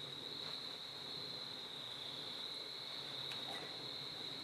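Crickets chirping in a steady, unbroken high-pitched trill.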